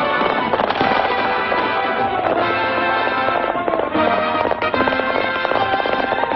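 Loud orchestral film score under a riding sequence, with a few sharp cracks cutting through the music.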